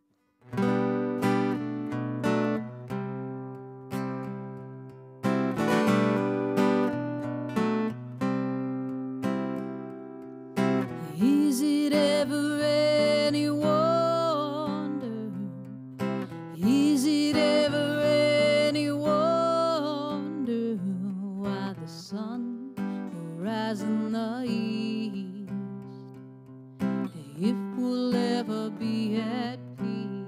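Acoustic guitar strumming chords, solo. About ten seconds in a woman's voice begins singing over it in long phrases.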